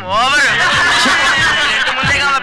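A man snickering and chuckling, over background music.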